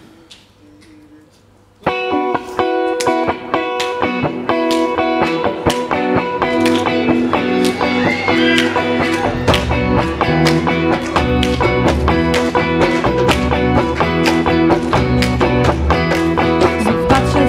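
Live worship-band music that starts suddenly about two seconds in, led by a rhythmically strummed electric guitar with a steady beat. A heavier bass line joins about halfway through.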